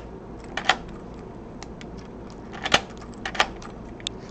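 Key being turned and worked out of a Schlage JD60 deadbolt cylinder whose superglued keyway has been freed by flushing with acetone: a few light metallic clicks and jingles, the sharpest about three-quarters of the way through.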